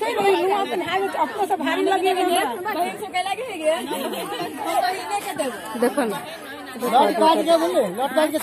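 A group of women singing a repetitive unaccompanied folk song, their held notes mixed with chatter.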